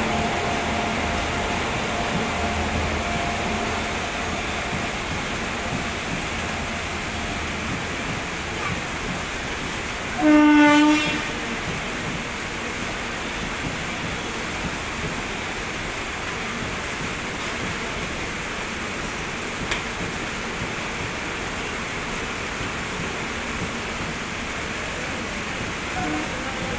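LHB passenger coaches of an electric-hauled express rolling slowly out of a station, a steady rumble of wheels on rail. About ten seconds in, a train horn gives one short single-note blast, under a second long.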